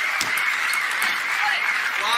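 Audience applauding steadily, with one sharp knock about a quarter second in.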